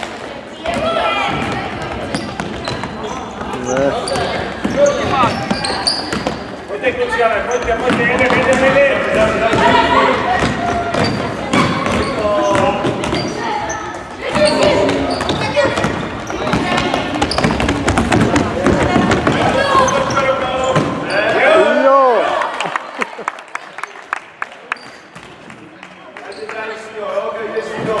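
A basketball bouncing repeatedly on a wooden gym floor, amid shouting voices, all echoing in a large sports hall. It turns quieter for a few seconds near the end.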